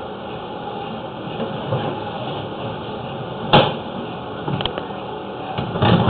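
Sewer inspection camera head and push cable being pulled back up out of the drain, against a steady mechanical noise. A sharp knock comes about three and a half seconds in and a lighter one about a second later, like the camera head striking the pipe or flange.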